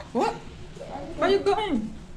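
A child's high voice making two whining sounds with pitch sliding up and down, a short one at the start and a longer one about a second in.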